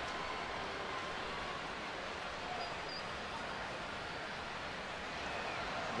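Steady murmur of a large ballpark crowd between pitches, an even wash of noise with no single sound standing out.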